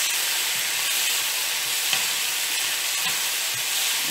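Sliced onion, tomato and yellow pepper sizzling in hot oil in a wok, a steady hiss, with a few faint taps and scrapes of a spatula stirring them.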